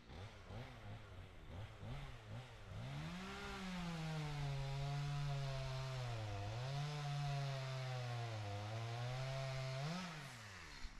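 A Stihl MS250 two-stroke chainsaw, heard at a distance, blipped unevenly for about three seconds, then held at high revs. Its pitch dips twice, typical of the chain bogging down in a felling cut through a pine trunk.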